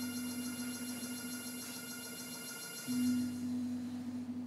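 A bowed string instrument holding a single low note, which fades slightly and is re-bowed louder about three seconds in, over a faint high electronic whine.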